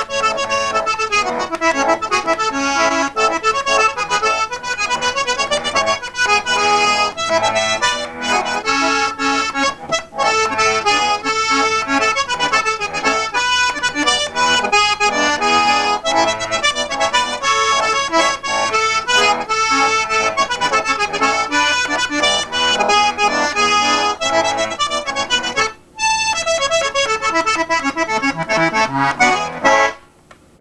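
A square-ended button concertina played solo: a tune with sustained reedy chords under the melody, driven by the bellows, with two short breaks in the playing, one about a third of the way in and one near the end.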